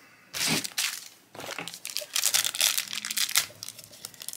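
A shiny black plastic wrapper of a blind-bag pin pack being crinkled and torn open by hand, in two stretches of dense crackling rustle.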